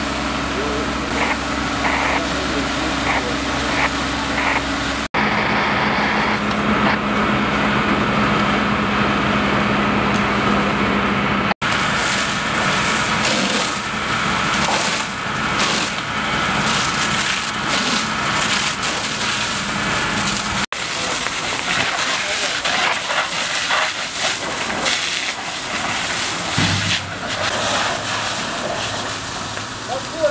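Fireground sound at a wooden house fire, in several cut-together shots. First a fire engine runs steadily beside the hose lines. Then a fire hose's water jet sprays onto the burnt log walls and hisses over the charred, smoking timbers.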